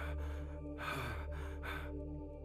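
A man taking three laboured, gasping breaths, one at the start, one about a second in and one near the end, like someone struggling for air in physical distress. Under them runs a low, sustained drone of dramatic score.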